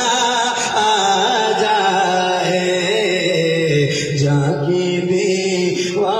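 A man singing an Urdu devotional kalam through a microphone, holding long, winding melismatic notes without a break.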